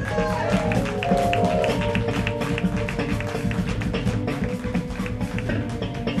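Smooth jazz trio playing live on bass, keyboards and drums, with held notes in the first two seconds over a busy bass line and frequent cymbal strokes.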